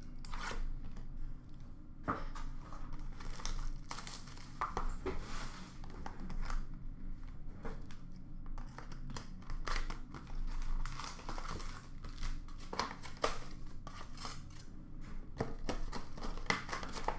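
Hockey card packs being torn open and the cards handled: foil wrappers crinkling and tearing, with cards rustling and tapping in a run of short, irregular clicks.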